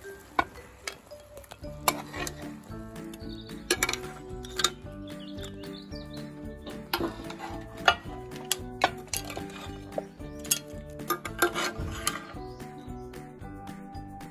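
A metal spoon scraping and clinking against a pan and a china plate as cooked prawns and mussels are served. Background music comes in under it about two seconds in.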